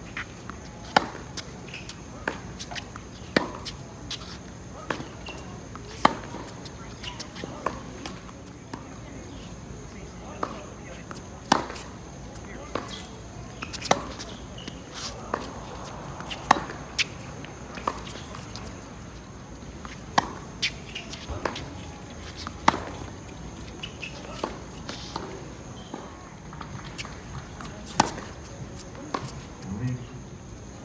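Tennis rally on an outdoor hard court. Sharp pops of racket strings striking the ball come every one to three seconds, with softer ball bounces and shoe scuffs between them.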